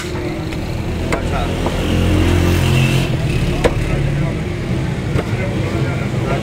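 Motor vehicle engine running close by, loudest about two to three seconds in. Over it come a few sharp knocks of a knife against a wooden chopping block.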